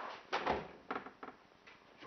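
Thuds of a body on a padded floor mat as a grappling partner is turned over: a loud double thud about half a second in, then a few lighter knocks and shuffles.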